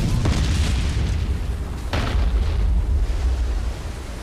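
Explosions in a naval battle scene: a deep, continuous booming rumble with a second sharp blast about two seconds in, dying away near the end.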